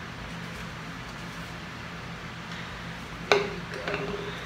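A plastic baby bottle set down on a tiled countertop with one sharp click about three seconds in, over a steady low hum.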